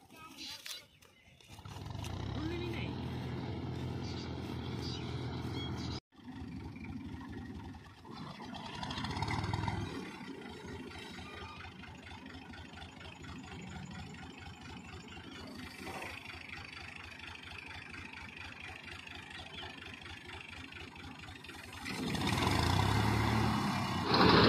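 Tractor engine running steadily while a front-mounted wheat reaper cuts the crop. It becomes much louder near the end.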